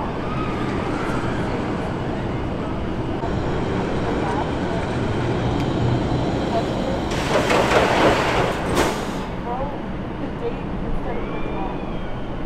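Roller coaster station ambience with voices in the background. About seven seconds in comes a loud rushing, hissing noise lasting about two seconds as a coaster train pulls into the station over the brakes.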